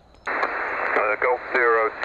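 A Yaesu FT-857 transceiver's speaker coming alive with band hiss about a quarter second in, then a distant station's HF single-sideband voice answering a CQ call, thin and narrow-band over the noise.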